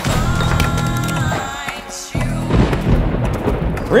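Film score with held tones that fall away about halfway through, followed by a sudden deep low rumble under the music.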